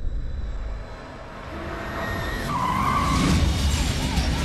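Car tyres squealing in a skid about two and a half seconds in, over a car's low engine rumble that grows louder toward the end.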